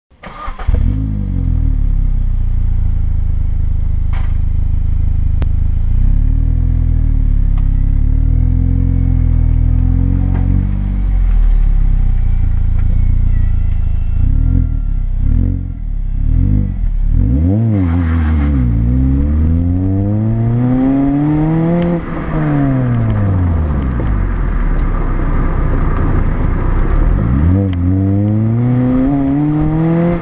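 Exhaust note of a Mini Cooper R50's 1.6-litre four-cylinder through an aftermarket Bastuck exhaust with twin tips. It idles for about the first fifteen seconds with a few light blips, then is revved repeatedly: quick blips, then a longer rev that climbs and falls back over several seconds, and another rev near the end.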